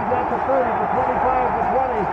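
A play-by-play announcer's voice calling a long touchdown run as the receiver races downfield, over steady stadium crowd noise.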